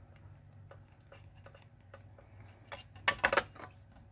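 Embossing powder being sprinkled over a stamped card and shaken off onto a plastic tray: faint light ticks, then a short burst of louder taps and rattles about three seconds in.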